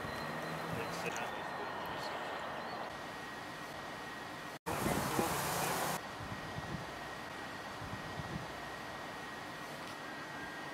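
Outdoor ambience with faint, indistinct voices of a few people talking. About halfway through, the sound drops out for an instant, then a louder rush of noise lasts about a second.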